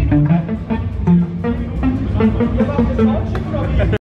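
A metal band playing live at high volume: an extended-range electric guitar picks a quick line of single notes over bass and drums.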